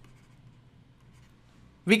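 Faint scratching and light tapping of a stylus writing on a tablet screen, over a weak low hum. A man's voice cuts in near the end.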